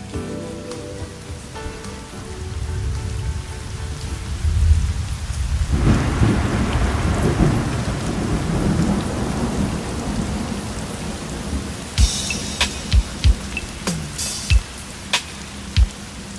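Thunderstorm recording: steady rain with a low rolling thunder rumble that builds a couple of seconds in and swells about six seconds in, as the last notes of a song fade out at the start. Near the end, sharp irregular knocks sound over the rain.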